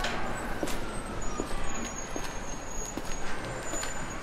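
Road traffic noise: a steady rush with a slowly falling whine, joined about halfway by a thin high squeal.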